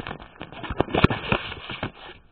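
Close handling noise on the microphone: a rapid, irregular run of knocks, clicks and clatter as objects are moved about, loudest about a second in.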